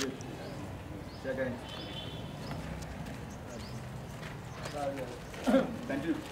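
Short, scattered bursts of voices over steady outdoor background noise, with a sharp knock at the start and the loudest voice burst near the end.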